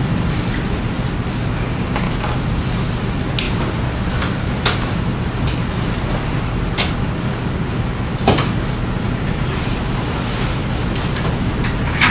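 Lecture-room background noise: a steady low hum, with a few faint clicks and one louder sharp knock about eight seconds in.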